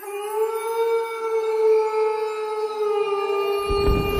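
A wolf howl sound effect: one long call held at nearly one pitch with a slight waver. A deep boom comes in just before the end.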